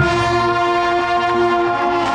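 Marching band's brass section holding a loud sustained chord, entering at once after a mallet passage, with low brass sounding beneath it.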